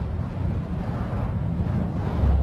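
A sound-effect swell for a logo intro: a low rumble under an airy, wind-like wash of noise.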